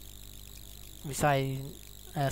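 A pause in a narrator's speech, with a faint steady hum, broken about a second in by one short spoken syllable.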